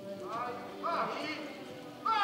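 Hoofbeats of a horse loping on arena dirt, under a voice speaking.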